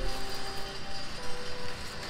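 A hand dolly's wheels rolling along, with background music playing over it.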